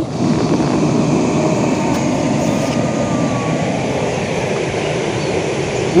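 Steady rushing of a swollen, fast-flowing muddy river, an even noise with no breaks.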